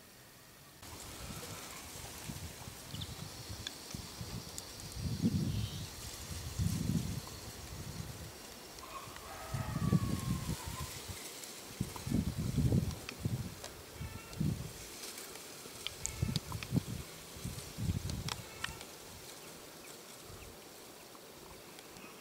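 Outdoor ambience with irregular gusts of wind buffeting the microphone, as low rumbles that come and go every second or two, over a faint steady hiss with a few faint higher chirps and clicks.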